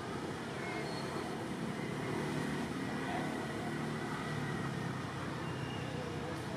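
Steady low rumble of a motor vehicle engine running in the background, a little louder in the middle.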